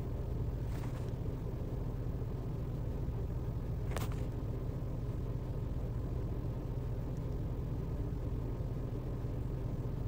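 Steady low rumble of a car, heard from inside the cabin, with a faint tick about a second in and another about four seconds in.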